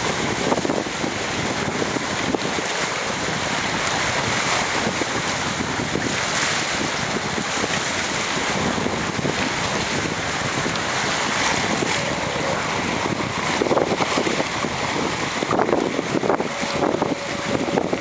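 Water rushing and spraying off a Hurricane 5.9 beach catamaran's hull as it sails fast, with wind buffeting the microphone in uneven gusts.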